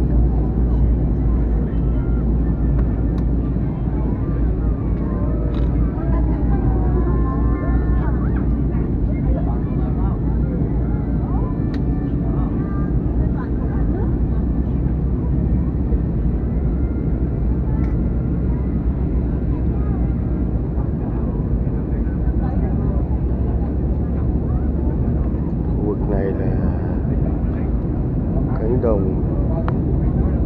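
Steady, deep roar of a jet airliner's engines and airflow heard inside the passenger cabin during descent, with faint voices now and then.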